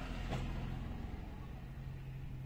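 Steady low hum of a car's engine, heard from inside the cabin.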